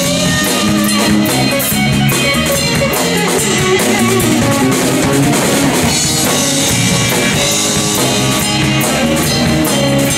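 Live blues-rock band playing an instrumental passage: electric guitar, bass guitar and drum kit, loud and steady.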